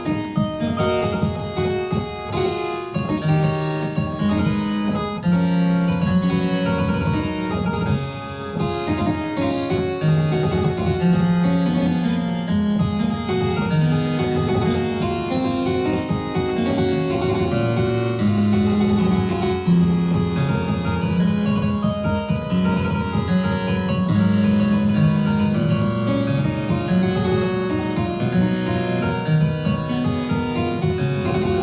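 Harpsichord playing a French Baroque keyboard piece: a steady stream of plucked notes over a moving bass line.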